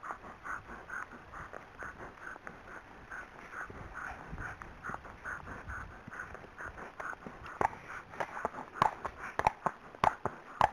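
A Friesian horse walking: soft, regular footfalls, about two or three a second, on a grass verge, then sharper and louder hoof clops on a tarmac lane in the last two or three seconds.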